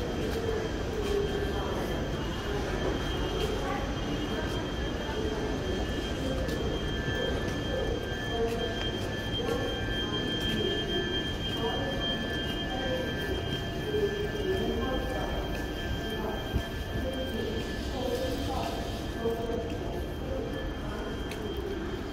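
Deutsche Bahn ICE train running slowly along the station track. There is a low rumble and a steady high whine that fades out about eighteen seconds in.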